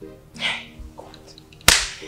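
Soft background music with held notes, a short breathy sound and a faint exclamation, then a single sharp, loud crack near the end.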